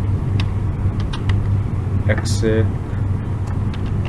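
Computer keyboard typing: scattered single keystroke clicks over a steady low hum, with a brief spoken word about two and a half seconds in.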